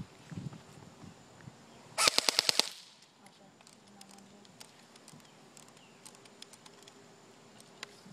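Airsoft MP5 electric rifle (AEG) firing one short full-auto burst, about eight shots in quick even succession lasting under a second, about two seconds in.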